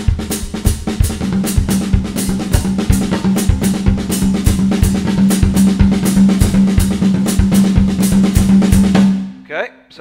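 Drum kit playing a limb-independence exercise at a quicker tempo: a syncopated right-hand pattern on the rack tom, whose ringing pitch carries through, against a steady cascara pattern in the left hand over a bass-drum foot pattern. The playing stops about a second before the end.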